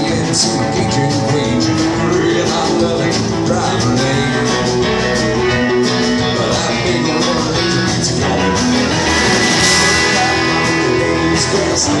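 Live country band playing through a PA: electric guitars, bass guitar and drums. The cymbals ring out brighter about nine seconds in.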